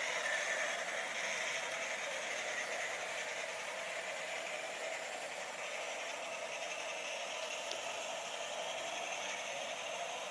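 00 gauge model train running along the garden track: a steady whirr and rail rumble, a little louder at first and then even.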